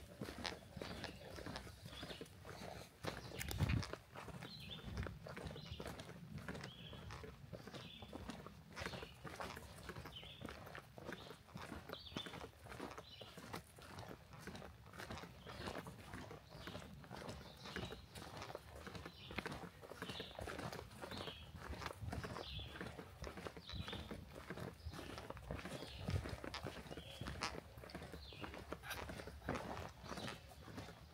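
Footsteps of hikers walking steadily on a dry, leaf-littered forest trail, with the sharp ticks of trekking pole tips striking the ground in rhythm with the stride.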